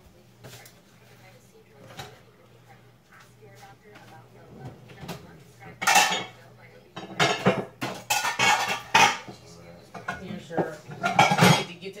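Kitchenware and utensils clattering as they are handled on a countertop. It starts with a few faint clicks, and from about halfway through it turns into a busy run of sharp clinks and knocks.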